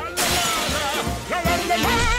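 A sudden sound of glass shattering, heard with music: a melody with wavering pitch plays over the crash.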